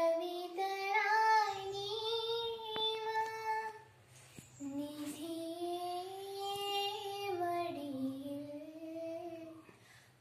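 A young woman singing solo, holding long sustained notes that slide gently in pitch, in two long phrases with a short breath about four seconds in.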